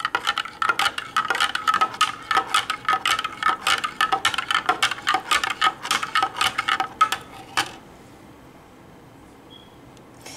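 Metal teaspoon stirring hot chocolate in a ceramic mug, clinking rapidly against the mug's sides with a short ring on each strike, several clinks a second. The stirring stops about three-quarters of the way through.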